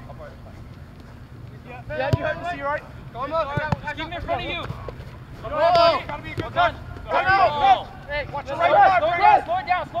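Men shouting to one another across a soccer pitch during play, several raised voices calling out in quick bursts from about two seconds in, over a steady low rumble.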